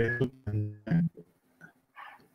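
A man's voice over a video call: the end of a spoken word, then a short steady-pitched tone that fades within about half a second, followed by brief pauses.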